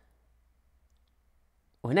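Near silence with a few faint computer-mouse clicks while the brush-size setting is changed; a man's voice starts near the end.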